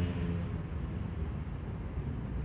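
Steady low rumble and faint hiss of room background noise in a pause between spoken words.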